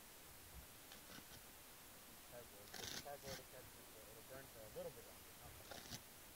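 Faint hand-tearing of cardboard: a few short rips, the loudest about three seconds in and another near the end, in near silence.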